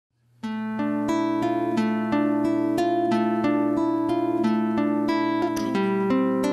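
Acoustic guitar playing a fingerpicked song intro. It starts about half a second in, with evenly spaced plucked notes, about three a second, over a steady low note.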